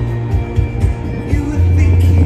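Live band playing loud, with electric guitars, a drum kit and a heavy bass line.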